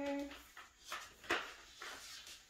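Folded paper poster being handled and laid down: three short rustling, sliding strokes of paper, the loudest about a second and a half in.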